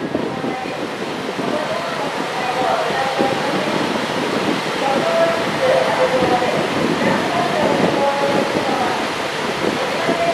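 Indistinct chatter of many voices on a station platform over a steady noise from a stationary KiHa 140 diesel railcar idling.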